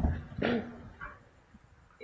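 A woman clearing her throat close to a podium microphone: one short, rough vocal burst about half a second in, after a soft low knock at the start, then room quiet.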